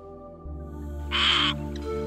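Soft background music with sustained chords, and about a second in, one short, harsh bird call over it.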